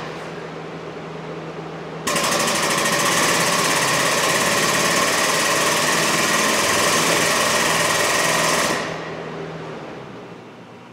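Pneumatic race-car jack's air supply: a loud rush of compressed air with a fast rattle that starts abruptly about two seconds in and cuts off near the end, over a steady low hum.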